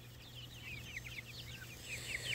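Free-ranging chickens and young poultry chirping faintly: many short, quick high chirps, one after another.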